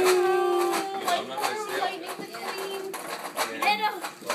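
A young child's voice in a long, drawn-out whining note that trails off about a second in, followed by quieter children's chatter and small clatter at the table.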